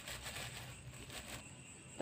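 Faint rustling of a thin plastic bag as flour is shaken out of it into a mixing bowl, dying away after about a second and a half.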